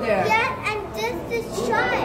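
Children's voices: excited talking and calling out, with other voices mixed in.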